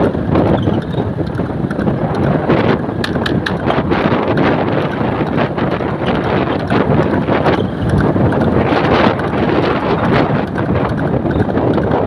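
Loud, steady wind buffeting the microphone of a moving motorcycle, mixed with the motorcycle's running noise, as it rides alongside a horse-drawn cart on the road.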